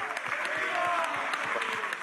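Audience applauding, with cheering voices mixed into the clapping.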